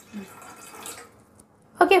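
Water pouring from a plastic bottle into an empty stainless steel pot, stopping about a second in.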